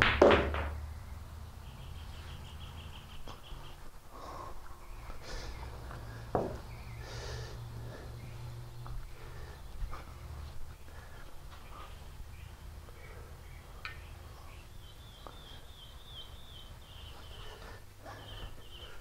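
Billiard shots: a sharp click of the cue tip and cue ball at the start, and another sharp knock about six seconds in, over a steady low hum. Faint bird chirps come twice, early on and near the end.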